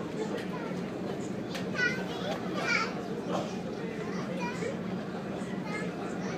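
Children's voices chattering and calling out in high-pitched shouts, the loudest about two seconds in, over the steady low drone of the ferry's engine.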